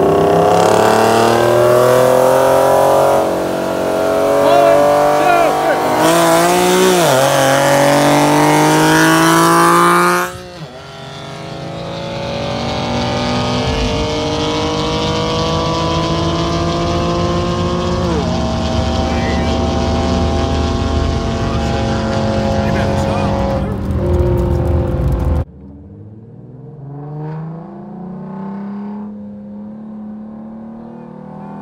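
Nissan VQ37 3.7-litre V6 engines at full throttle in a roll race, revs climbing steadily with a drop in pitch at each upshift. The sound breaks off suddenly twice, about ten seconds in and again near the end, each time picking up on another pull. The last pull is quieter, heard from inside a car's cabin.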